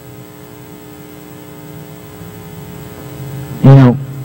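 Steady electrical mains hum with a stack of evenly spaced overtones, low in level. A man's voice starts speaking near the end.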